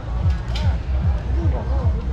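Music with a steady, deep bass beat, with voices over it.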